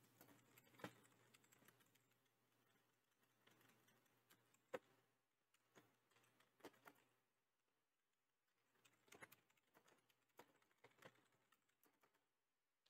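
Computer keyboard keystrokes, faint and sparse: about ten scattered single key clicks over near silence.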